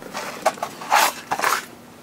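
Small metal tools clinking and clattering as they are handled in a steel toolbox drawer, with a few short clatters about half a second to a second and a half in.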